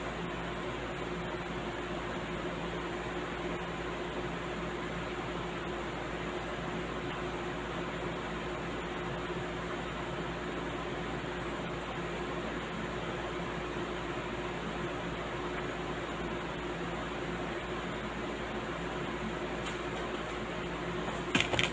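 Steady room noise: an even hiss with a faint low hum, unchanging throughout.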